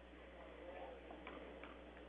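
Near silence: faint gymnasium room tone with a few soft ticks around the middle.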